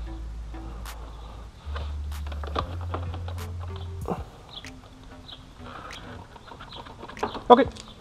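Low bass notes of background music for about the first four seconds, under scattered sharp clicks and taps from hands working the plastic motorcycle fairing panels and their clips.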